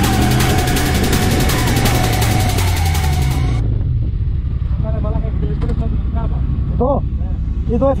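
Music with a steady beat, cutting off suddenly about three and a half seconds in to the riding sound of a motorcycle on a helmet-mounted camera: steady engine and wind rumble, with a few short bursts of a man's voice near the end.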